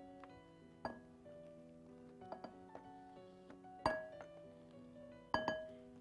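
Soft background music with held notes, cut by three sharp clinks and knocks as a wooden spoon scrapes and knocks a stainless-steel food mill full of apple purée. The last two knocks are the loudest.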